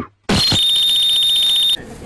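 A loud electronic buzzer sound effect: one high, steady, slightly rasping tone that starts with a brief higher blip about a third of a second in, holds for about a second and a half, then cuts off sharply.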